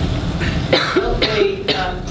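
A voice from the audience, off the microphone and carrying in the hall, in a few short bursts near the end, answering a question put to the room.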